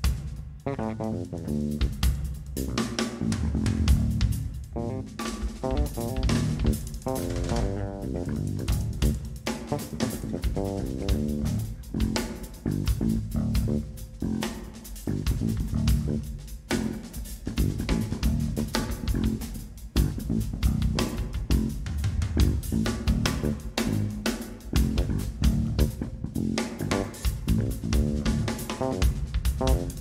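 Live band music: a large acoustic drum kit played busily with dense, fast strokes, alongside electric guitar and bass guitar.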